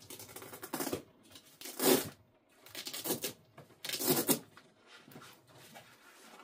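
Rustling and scraping as a soft nylon rifle bag and rifle are handled, in four short bursts, the loudest about two seconds in.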